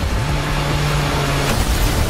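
Cinematic trailer sound design: a loud deep sustained rumble with a wide rushing noise over it, hitting suddenly and building into the title card. The low held tone dips slightly in pitch about a second in.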